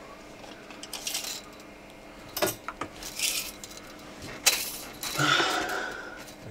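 Steel tape measure being pulled out and lowered into a boat's bilge: several short metallic clinks and scrapes.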